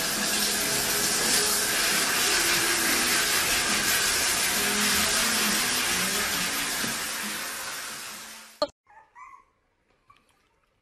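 Shower spray running steadily in a tiled shower stall, a constant hiss that cuts off suddenly near the end.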